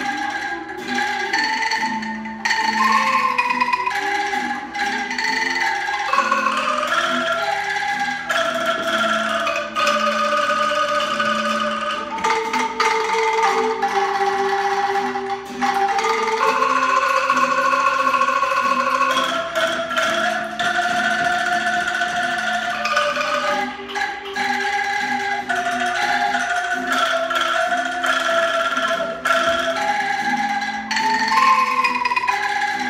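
Angklung ensemble of hand-shaken bamboo tubes playing a melody over chords, the notes changing every half second to a second without a break.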